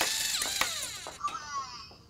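LEGO Mindstorms robot playing an electronic sound effect through its speaker: a burst of high, sweeping tones that fades away over about two seconds.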